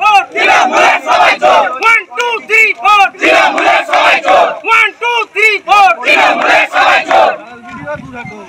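A crowd of protesters chanting slogans: loud, rhythmic shouted syllables that die down shortly before the end.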